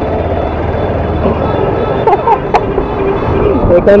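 A Bajaj Pulsar 220 motorcycle's engine running steadily, with street traffic and voices around it.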